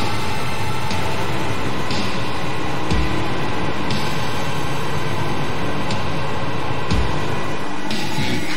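Instrumental karaoke backing track of an experimental noise-rock song: a dense wall of distorted noise with a hit about once a second.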